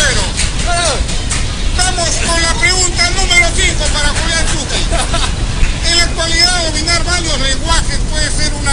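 Speech: a voice talking over a steady low background rumble.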